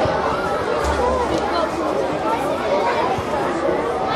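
Many children's voices chattering and calling at once in a large room, with no single speaker standing out.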